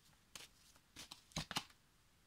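Oracle cards being shuffled by hand: several brief, faint card snaps and rustles, the loudest pair about one and a half seconds in.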